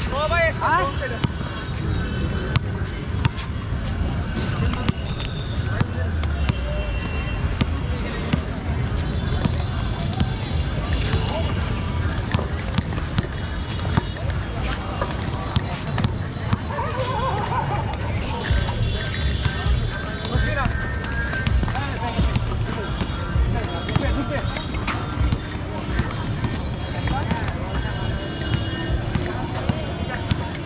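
Inline skate wheels rolling on a hard court with a steady rumble, a rollball bouncing and being handled in many short knocks, and players' and onlookers' voices shouting throughout.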